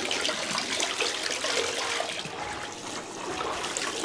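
Water from a bathtub tap pouring into a bath covered in bubble foam, with small splashes as a toddler's hand plays in the stream.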